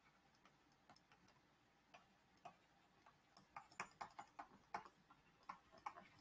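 Near silence with faint, short clicks of a digital pen stylus tapping against a screen as words are handwritten. The clicks are sparse at first and come quickly and irregularly over the last couple of seconds.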